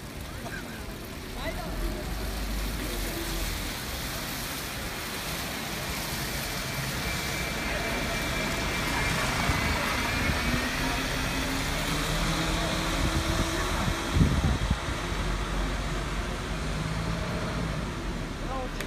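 A Mercedes-Benz Citaro articulated city bus passing close by and pulling away. Its engine and drivetrain whine rises in pitch as it gathers speed. A single sharp knock comes about fourteen seconds in.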